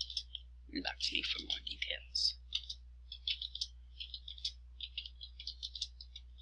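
Typing on a computer keyboard: quick runs of keystroke clicks with short pauses between the words.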